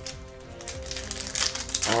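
A foil trading-card booster pack wrapper being torn open, crinkling in quick crackles from about the middle on, over quiet background music.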